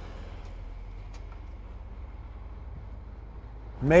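A steady, low rumble of vehicle and road noise.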